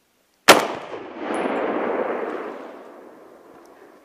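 A single hunting rifle shot about half a second in, followed by a long rolling echo off the valley sides that swells about a second later and dies away over the next two seconds.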